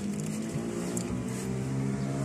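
Car engine running steadily, heard from inside the cabin as a low, even hum.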